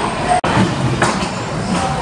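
Busy indoor arcade din: a steady jumble of voices and game-machine sounds, cut by a momentary dropout less than half a second in.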